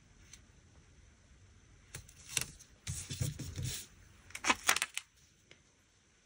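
Paper rustling with light clicks and taps as a sticker and a disc-bound planner page are handled and pressed down. It starts about two seconds in and lasts about three seconds, with the sharpest clicks near the end.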